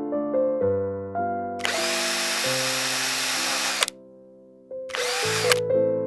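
A small power tool runs for about two seconds and winds down. It starts again briefly about five seconds in, over background piano music.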